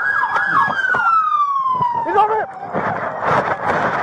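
Police car siren wailing: its pitch holds high, then falls steadily over about two seconds, with voices calling over it.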